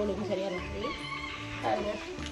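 A woman's voice over background music with steady held tones and a regular low beat.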